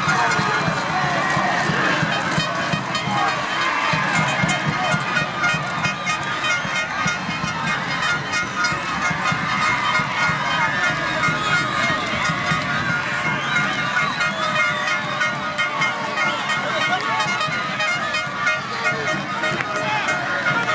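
Crowd of football spectators in the stands shouting and chattering, many voices at once with no single voice standing out, keeping up a steady din.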